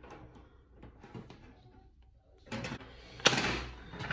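Wire cutters working through the bars of a metal wire wreath frame: faint clicks and scrapes, a clatter of the metal frame about two and a half seconds in, then a sharp snap a little over three seconds in as a bar is cut through.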